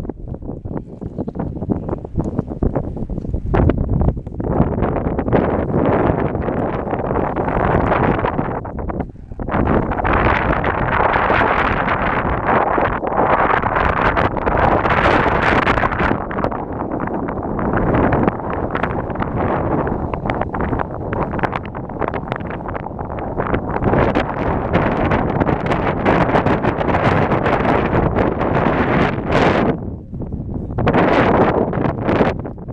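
Strong wind buffeting a handheld camera's microphone as a loud, continuous rumbling rush, easing briefly about nine seconds in.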